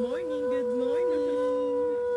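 A dog howling: one long, steady howl held throughout, with a second, lower howl wavering up and down beneath it.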